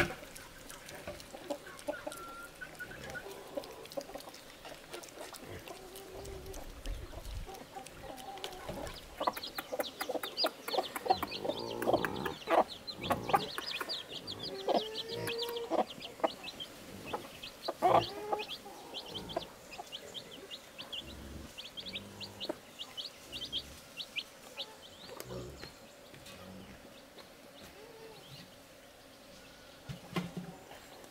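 Hens clucking on and off, busiest through the middle stretch, with many short, quick high-pitched calls.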